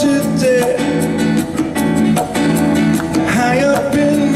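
Live acoustic band music: strummed acoustic guitar and electric keyboard chords over conga drums keeping a steady beat.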